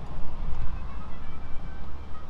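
Wind rumbling on the microphone outdoors, a steady low rumble, with faint thin tones above it in the middle.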